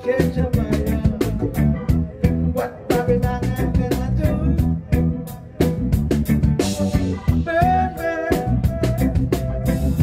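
Live reggae band playing: drum kit, bass and guitar, with a man singing into the microphone.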